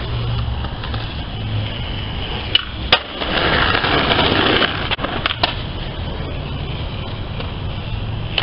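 Skateboard wheels rolling on concrete with a steady rumble, getting louder as the board passes close a little after the middle. Sharp clacks of the board striking the ground come twice just before that and again a little after five seconds.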